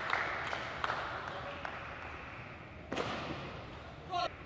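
Table tennis rally: a plastic ball being hit back and forth, sharp clicks off the rackets and table several times over a steady low hall ambience, the loudest hit about three seconds in.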